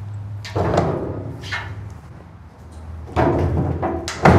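An aluminum stock trailer's escape door being handled and swung open. There are a couple of softer knocks, then a louder clatter of metal from about three seconds in.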